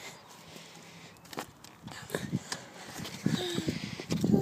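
Faint scattered taps and clicks of footsteps on concrete and a small child's bike being handled, with a short voice sound about three and a half seconds in.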